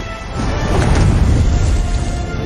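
Film soundtrack: music under a deep rumbling sound effect for a sparking portal, swelling about half a second in and easing near the end.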